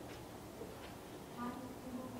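Quiet room tone with a couple of faint clicks, and a brief faint voice about one and a half seconds in.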